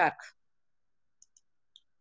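Three faint, short computer-mouse clicks, two in quick succession just past a second in and a third a little later, against near silence.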